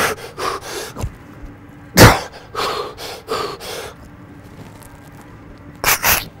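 A man's heavy, forceful breathing from exertion on the last push-ups of a set: separate hard exhalations, the loudest about two seconds in, a quick run of breaths around three seconds in, a lull, then another hard breath at the end.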